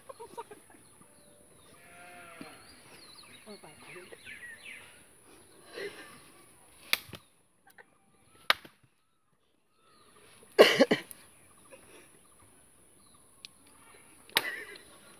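A few sharp slaps of hands in a slapping game, spaced a second or more apart, the loudest a quick cluster with a burst of voices about ten and a half seconds in.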